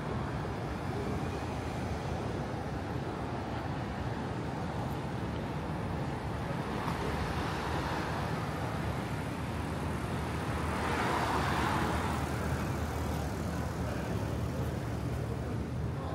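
Steady city street traffic noise, swelling briefly as a vehicle passes about two-thirds of the way through.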